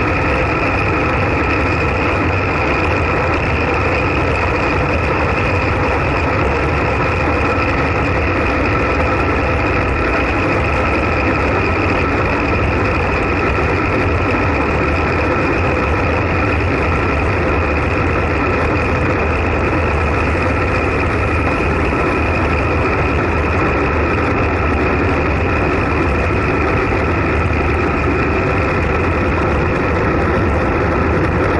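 Steady wind rush buffeting a bike-mounted action camera's microphone, mixed with road-bike tyre noise on asphalt, at racing speed of about 40–55 km/h in a pack. A constant whistling tone runs through the noise.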